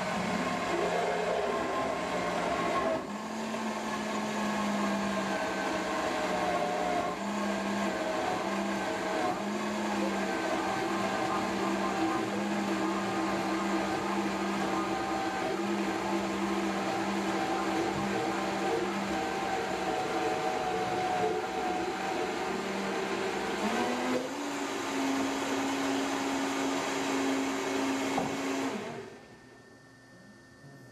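Vitamix blender motor running steadily, whipping an oil, ginger and garlic dressing into an emulsion. Its hum wavers, steps up in pitch about 24 seconds in, and cuts off shortly before the end.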